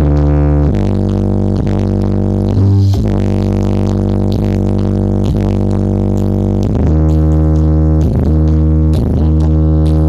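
Loud music played through a stacked sound-system rig with four subwoofers during a sound check: a deep droning bass line whose notes change about once a second, with short sliding steps between them.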